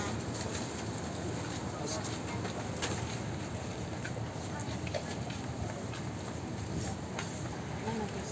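Steady outdoor background noise with faint, indistinct voices and a few light knocks.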